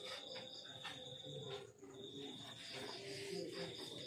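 Crickets trilling, a steady high-pitched trill with a second, pulsing note just above it.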